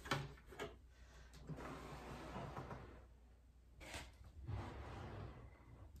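Faint sounds of wooden chest drawers being slid in and out, soft sliding noise broken by a few light knocks, one of them about four seconds in.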